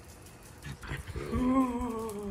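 A dog giving a drawn-out whine-howl of about a second, starting a little past halfway, after a few light clicks of claws on the tile floor.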